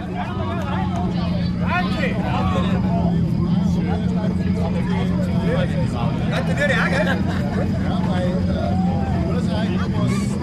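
Several people talking close by, over a steady low engine drone that holds one pitch.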